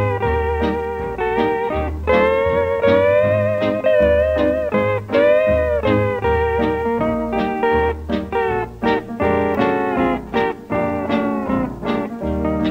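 Instrumental break from a 1942 country record: electric steel guitar plays the lead with gliding, bending notes over bass and rhythm accompaniment. The notes are long and sustained at first, then shorter and choppier in the second half.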